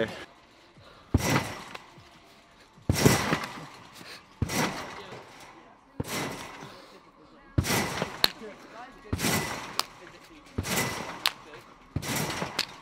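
A person bouncing on a large spring trampoline: an even series of about seven bounces, one every second and a half, each a sharp thump of the mat and springs that rings on briefly.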